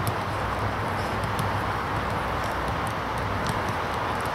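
Footballs being struck in a passing drill on a grass pitch: scattered short, sharp knocks, several within a few seconds, over steady outdoor background noise.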